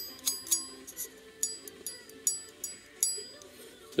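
Full hollow-ground Damascus steel straight razor blade tapped with a fingertip in a quick series of about a dozen light taps, each leaving a high metallic ring; the taps stop about three seconds in. The clear ring comes from the thin, fully hollow-ground blade.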